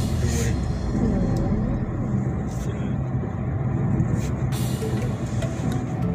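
Steady road and engine noise of a car driving along a highway, a low continuous rumble heard from inside the moving car.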